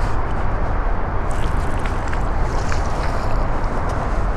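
Steady low rumble of road traffic on the highway bridges overhead, with a few faint ticks.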